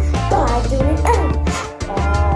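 Recorded song with a heavy bass line and short pitched sounds gliding up and down over it. The bass drops out briefly near the end.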